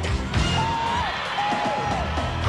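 Pop music with heavily boosted bass. A high held melodic line bends downward twice over the bass.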